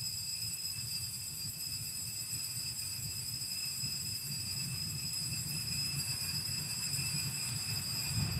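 Altar bells ringing at the elevation of the chalice during the consecration: a steady, high, sustained ringing over a low rumble.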